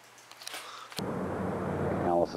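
Faint room sound with a few small ticks. About halfway it cuts to the steady hiss and low hum of old VHS tape footage.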